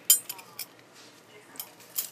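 Gold-tone metal costume rings clinking against each other as they are picked up and handled: one sharp clink just after the start, the loudest, then a few lighter clinks, the last at the very end.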